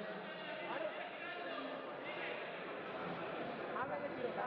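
Indistinct overlapping voices of people talking in a sports hall, with no single voice standing out.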